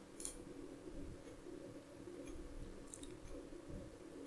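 Faint room tone with a low steady hum, broken by a few soft computer-mouse clicks: one just after the start and a couple about three seconds in.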